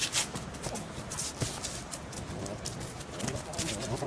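A dog's feet clicking and scuffing irregularly on an asphalt street as it runs, over a steady background of street noise.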